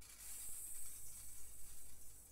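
Hand percussion shaken or rubbed, giving a soft, high, hissing rattle with an uneven flutter. It swells in just after the start and keeps going.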